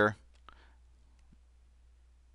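The last word of speech ends just after the start. Then come a few faint, sharp clicks over a low steady hum, from a digital pen drawing on screen.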